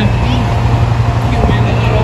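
Road traffic noise from cars driving past, a steady low rumble under an even hiss.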